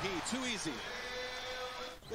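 A broadcast commentator speaking over arena crowd noise, then a steady held tone for about a second before the sound cuts off.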